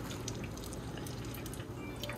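Hot oil sizzling in a pot as beer-battered walleye pieces deep-fry: a steady hiss with fine crackling running through it.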